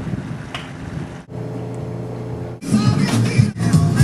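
A steady low hum, like a boat engine running at the dock, for about a second, broken by sudden edit cuts. Music comes in a little past halfway.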